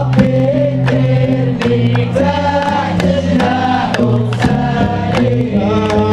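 Hamadsha Sufi brotherhood chanting: a male choir singing a religious chant in unison, over a steady percussion beat that falls a little faster than once a second.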